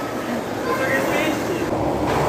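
Steady rumble of skateboard wheels rolling on a concrete floor, with voices faintly in the background.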